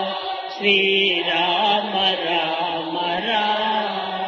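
Devotional bhajan chanted in long held lines; the voice breaks off about half a second in and the next line starts, a little louder.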